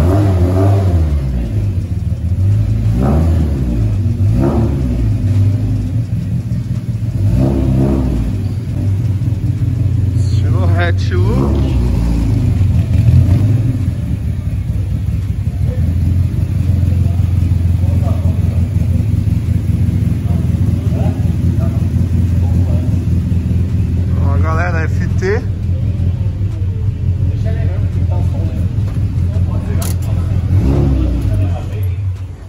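Naturally aspirated four-cylinder engine of a Fiat Uno 1.6R, built with a Bravo 288 camshaft and FuelTech injection, idling loudly with several quick throttle blips.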